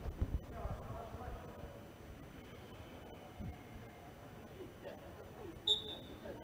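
Faint players' shouts echoing around an indoor pitch, with a few low thumps near the start. A short, high whistle blast sounds near the end as play restarts.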